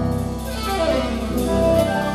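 Live instrumental jazz band playing: saxophone melody over electric bass, keyboard and drum kit, with cymbal strokes keeping time.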